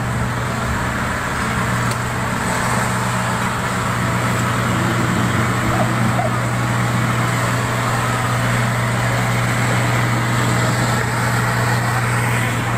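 A motor vehicle's engine running steadily: a constant low hum under an even wash of noise.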